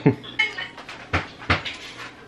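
A baby's short squeals and vocal sounds, with two sharp knocks a little after a second in.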